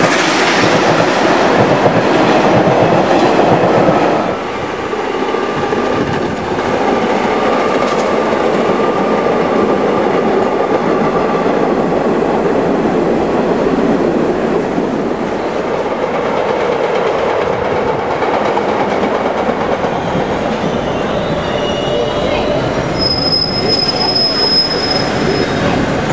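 An SMEE-type museum subway train of R-11, R-16, R38 and R-42 cars running through a station, steel wheels rolling over the rails, loudest for the first four seconds as the cars pass close, then a steadier rolling as the train moves off. A brief high-pitched squeal comes near the end.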